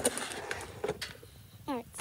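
A few light knocks and rustles from a cardboard box of sidewalk chalk being handled, with a short spoken word near the end.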